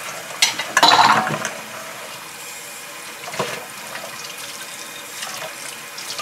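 Hot water running steadily from a kitchen tap into a stainless steel sink as glass and metal bowls are rinsed under it, with a louder splash about a second in and a shorter one near the middle.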